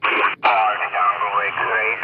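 Radtel RT-950 Pro handheld's speaker playing amateur voice signals on the 40 m band in lower-sideband mode, narrow and radio-filtered. The audio cuts out briefly twice in the first half-second as the frequency is stepped while tuning.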